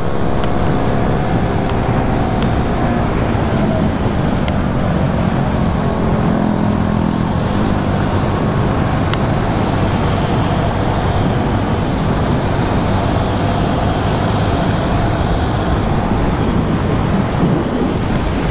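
KTM Duke motorcycle engine running at highway speed, about 85 to 95 km/h, with heavy wind rush on the helmet microphone. The engine's note shows plainly for the first few seconds, then sinks under the steady wind and road noise.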